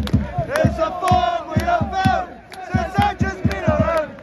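Large football crowd singing a chant together in unison, over a regular beat of low thumps about four a second.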